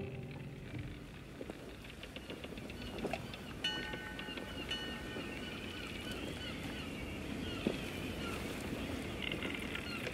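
Sailing-ship sound-effect ambience: a low, steady wash of sea and wind with a few faint knocks. From about four seconds in come high, wavering bird calls.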